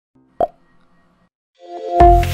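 Logo intro sting sound design: a single short pop about half a second in, faint held tones after it, then a rising swell near the end that leads into the intro music.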